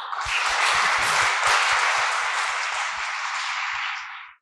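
Audience applauding at the close of a talk, a dense clatter of many hands clapping that reaches full strength within the first half second and holds steady.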